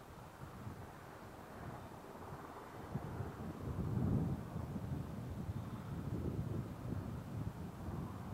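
Low, rumbling rush of wind and air noise, swelling to its loudest about four seconds in, on an outdoor field microphone as the unpowered Space Shuttle orbiter glides in on final approach.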